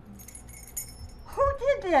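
Faint, light metallic jingling for about the first second, followed by a woman's voice speaking briefly near the end.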